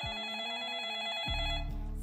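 Telephone ringtone: a steady electronic trilling ring, with a low hum coming in about halfway through.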